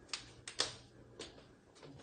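A few faint, irregular clicks and taps, about five in two seconds, over a low room hum.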